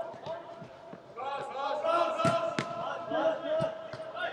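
Players shouting to each other, echoing in a large indoor football hall, louder from about a second in. Several sharp thuds of a football being kicked, the loudest in the second half.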